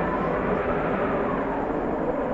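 A steady, dense rumble, with a faint held tone that rises and falls gently.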